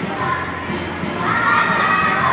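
Children shouting and calling out over a steady hubbub of many voices, with long high-pitched shouts starting about halfway through.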